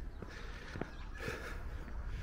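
A few faint footsteps of a person walking on a paved pavement, over a steady low outdoor rumble.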